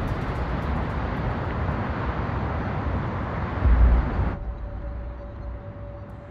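Steady wash of outdoor city noise, like traffic, with a deep low rumble swelling a little before it ends. About four and a half seconds in, it cuts to a much quieter room tone with a faint steady hum.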